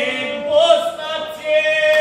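A man singing a Croatian folk epic in the guslar style with gusle accompaniment, his voice in held, wavering notes that break into short phrases.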